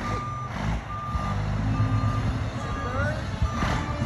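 Fire engine's reversing alarm beeping about once a second over the low running of its engine as the truck backs up.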